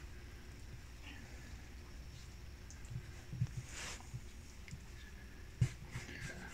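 Quiet, soft handling sounds of hands rolling a sheet of sticky fruit-filled bread dough into a log on a silicone mat: a few faint dull knocks and a short rustle about four seconds in.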